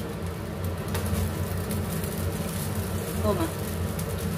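A steady low hum runs throughout, with faint scraping of a spatula stirring fried rice in a wok and a light knock about a second in.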